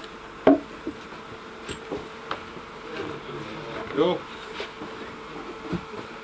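Wooden mine timbers knocking together as they are laid into a cribbed support: one sharp knock about half a second in, then a few lighter knocks, over a steady hum.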